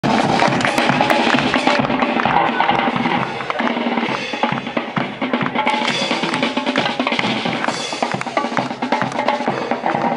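Dweilorkest (Dutch carnival brass band) playing: brass and sousaphones over bass drum, hand cymbals and drums, with a steady beat.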